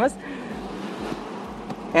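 Steady road and engine noise inside the cabin of a moving Toyota Land Cruiser Prado 120, an even rush with no distinct tones or knocks.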